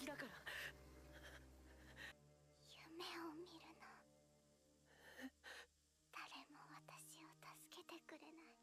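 Faint, whispered dialogue over soft, sustained background music.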